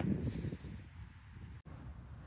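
Faint low wind rumble on the microphone, with a momentary dropout about one and a half seconds in.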